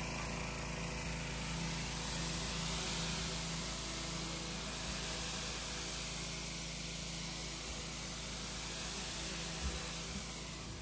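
Pressure washer running steadily, a low motor hum under the even hiss of its wand spraying water inside a plastic IBC tote.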